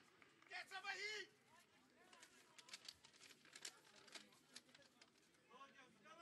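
Faint shouting voices on a football pitch: a call about half a second in and another starting near the end, with an irregular run of sharp knocks in between.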